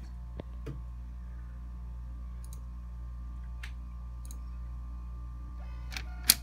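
A few faint, sharp computer-mouse clicks, spread over several seconds, over a steady electrical hum from the computer.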